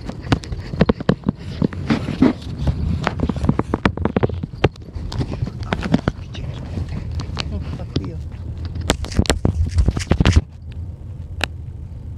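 Car driving over a rough road: a low rumble under irregular knocks and rattles, which stop suddenly shortly before the end as the ride smooths out.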